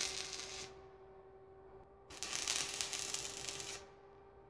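Electric arc welding crackling and hissing in two short runs: the first stops about half a second in, and the second starts about two seconds in and stops near the end. A faint steady hum runs underneath.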